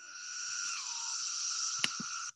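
Steady buzzing chorus of periodical cicadas from a film soundtrack, with a single sharp click near the end.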